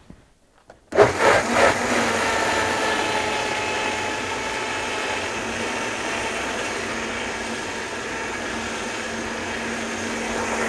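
High-powered countertop jug blender switched on about a second in and running steadily, puréeing a thick mix of cooked chicken and vegetables that has just been thinned with added water.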